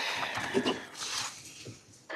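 Room noise during a pause in a meeting: rustling and shuffling with brief faint murmured voices.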